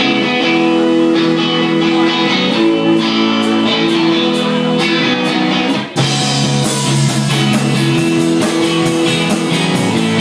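Live rock band playing the opening of a song: electric guitar and bass guitar chords ring out steadily. There is a brief break about six seconds in, after which an even, fast ticking of cymbals joins in.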